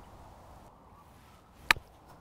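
A golf club striking the ball on a short pitch shot: one sharp, crisp click near the end.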